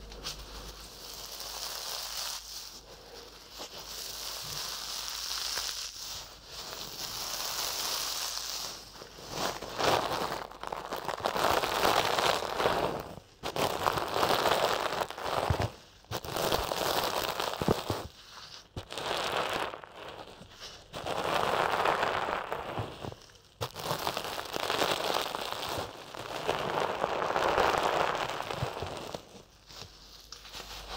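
Lavender-filled fabric doll rubbed and brushed against the ears of a binaural microphone, right up close. It makes a series of rustling strokes, each one to three seconds long, softer at first and louder from about a third of the way in.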